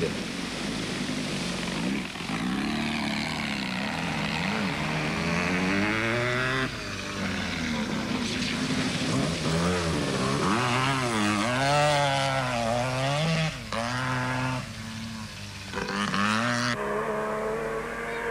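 Off-road racing car engines revving up and down through the gears as the cars drive through a water splash, with a hiss of spraying water. The engine note shifts abruptly several times as different cars take over.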